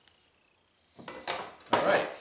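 Diced tomato pieces tipped into a glass bowl of cut vegetables, with hands handling the bowl: two short soft clattering, rustling noises, one about a second in and a louder one near the end, after a near-silent first second.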